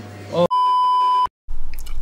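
A single steady electronic beep, a pure tone under a second long, edited into the soundtrack. It cuts off abruptly into a moment of dead silence.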